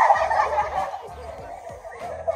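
A group of girls laughing and squealing together, loudest at the start and dying down over the next second or so.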